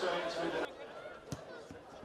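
Voices of players and people at a football pitch, chattering after a goal, cut off abruptly about a third of the way in. Quieter outdoor pitch sound follows, with one short knock.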